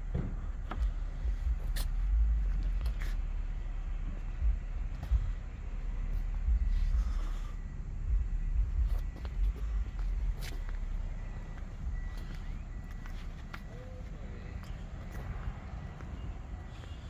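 Low, uneven wind rumble and handling noise on a hand-held phone microphone, with scattered light clicks and footfalls on pavement as it is carried along the vehicle.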